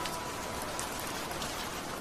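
Rain falling steadily, an even hiss with scattered drop taps. The last note of a music box rings out and dies away in the first second.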